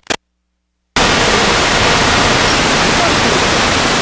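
Dead silence for about a second, then a sudden loud, even static hiss across all pitches: the recording's audio signal failing and breaking into noise.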